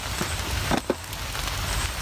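Rain coming down hard, a steady hiss of falling drops.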